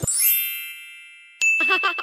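A bright, sparkling chime sound effect that strikes at once and rings away over about a second and a half. Then a young child's short giggle comes in with a second high, held chime tone.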